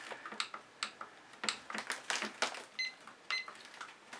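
A string of light, separate clicks and taps, with two short high beeps about three seconds in.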